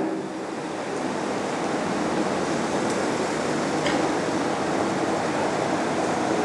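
Steady, even background hiss with no voice, from room noise or the recording itself, with a faint click about four seconds in.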